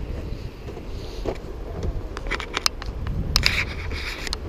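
Wind buffeting the microphone as a low rumble, with a run of sharp clicks and rattles from about two seconds in to three and a half seconds.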